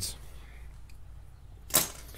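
A metal tie rod puller set down on a concrete floor among other tools, one short sharp clink about 1.7 seconds in, over a low steady hum.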